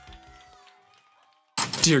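The tail of the music fades out over about a second into a brief near silence. About one and a half seconds in, a man's voice starts abruptly and loudly.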